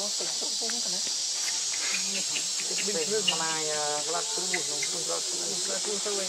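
Steady, high-pitched chorus of insects droning in the forest canopy without a break.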